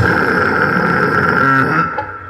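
Live heavy band's amplified sound holding one steady ringing note with the drums stopped, fading slightly near the end.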